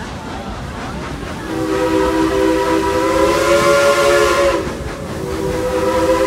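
Chime whistle of the Dollywood Express narrow-gauge steam locomotive. It gives a long blast of several notes sounding together from about a second and a half in, rising slightly in pitch before it stops, then a second blast starts near the end. A steady low rumble runs underneath.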